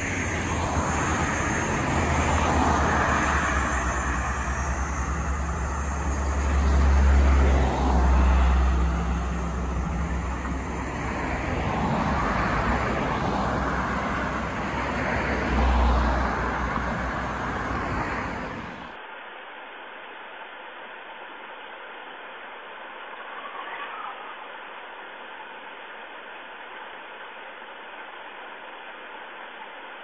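Road traffic on a multi-lane city road: cars driving past with a deep tyre and engine rumble, loudest as vehicles pass close about a quarter of the way in and again just past halfway. About two-thirds through, the sound cuts suddenly to a much quieter, muffled steady noise.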